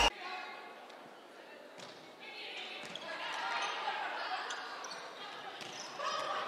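Faint crowd noise in an indoor volleyball gym, growing louder about two seconds in, with a couple of sharp knocks of the ball being struck during a rally.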